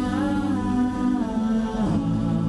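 Wordless hummed vocal music: a steady low drone under a voice that slides up and then back down in pitch.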